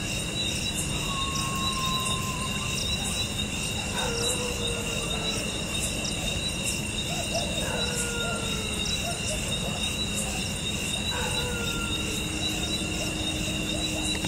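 Crickets and other insects chirring steadily, with about four faint, long, slightly falling howls from dogs a few seconds apart.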